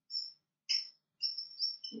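Marker pen squeaking on a whiteboard while writing, in a few short high squeaks with brief gaps between them.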